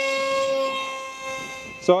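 Brushless outrunner motor (2212, 2200 Kv) spinning a 6x4 propeller on a hand-launched foam RC jet: a steady high whine that fades a little near the end as the plane flies away.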